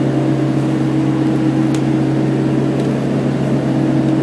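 Trailer refrigeration (reefer) unit running with a steady, loud droning hum, heard from inside the empty trailer box.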